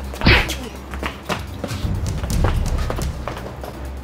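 Fistfight punch impacts over background music: one loud hit about a third of a second in, then a run of lighter, quick knocks and scuffles.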